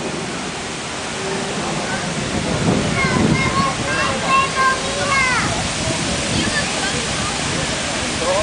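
Unisphere fountain jets splashing, a steady rushing of falling water, with people's voices rising over it briefly in the middle.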